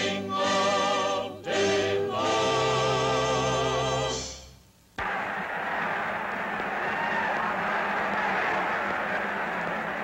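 Singing with held, wavering (vibrato) notes that fades out about four and a half seconds in; after a short gap a sudden dense, steady din of many voices takes over.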